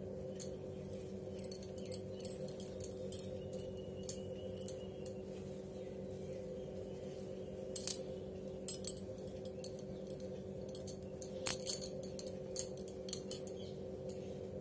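Bangles clinking lightly and fabric rustling as a hand handles and smooths a blouse, with scattered small clicks that come in clusters and are loudest about two-thirds of the way through. A steady low hum runs underneath.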